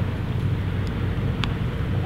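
Steady low outdoor background rumble, with a single short click about a second and a half in.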